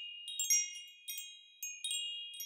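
High wind-chime tinkling: a scatter of light chime strikes, each note ringing on.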